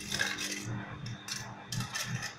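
Round-tipped scissors cutting kitchen aluminium foil, with a few short, crisp crinkling snips as the blades work through the crumpled foil.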